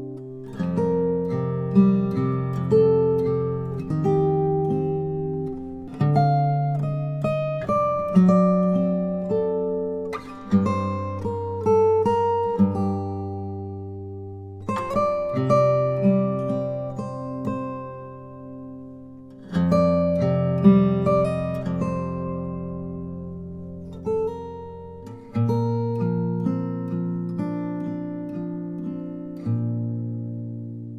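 Solo steel-string acoustic guitar played fingerstyle with a thumb pick: a slow melody of plucked notes over sustained bass notes, in phrases that start afresh every four to five seconds and fade away toward the end.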